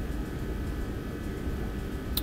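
Steady low background hum with a few faint high steady tones above it, unchanging throughout.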